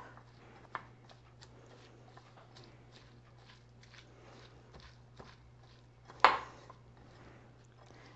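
Hands massaging salted, diced cucumber, radish and green onion in a bowl: faint, irregular wet squishing and crunching, with one louder rustle about six seconds in. The salt is drawing moisture out of the vegetables.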